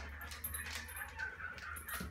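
A dog moving about on a hardwood floor, panting, with a string of quick light clicks and breaths.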